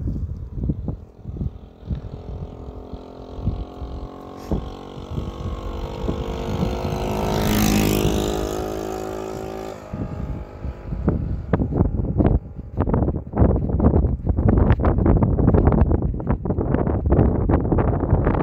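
A motor vehicle's engine hum that swells to a peak about eight seconds in and stops about two seconds later. It is followed by dense, irregular knocks and rumbles on the microphone, like gusty wind or handling.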